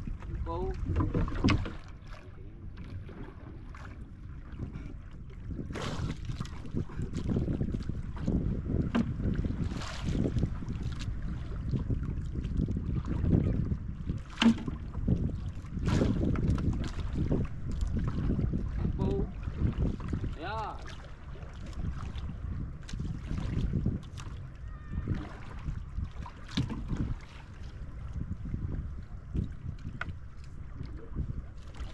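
Wind rumbling on the microphone over water lapping and splashing against a small wooden outrigger canoe, with irregular knocks and splashes.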